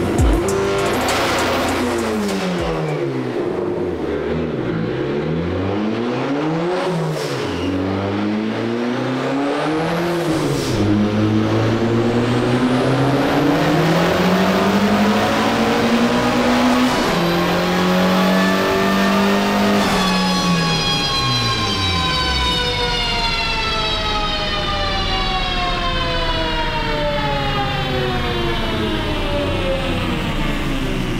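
Turbocharged 2.0 L Ecotec LNF four-cylinder of a modified Chevrolet Cobalt revving hard: the pitch drops and rises sharply several times, then climbs steadily. About two-thirds of the way in it changes abruptly and winds down in one long, slow fall in pitch.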